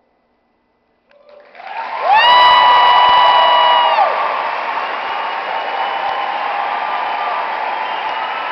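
Audience applause and cheering breaking out after about a second of silence, growing loud by two seconds in and staying steady. Over it, one long high-pitched cheer is held on a single note from about two to four seconds in.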